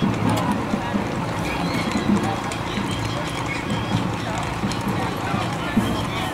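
Horse hooves clip-clopping on a paved street as a gaited horse singlefoots along, with people talking and music in the background.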